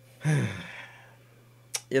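A man sighs once, a short breathy exhale that falls in pitch, about a quarter of a second in. Near the end there is a brief breath or mouth click just before he starts speaking.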